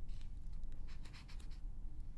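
Magazine pages being handled and turned by hand: crisp paper crinkling and rustling, a short burst near the start and a longer cluster through the middle.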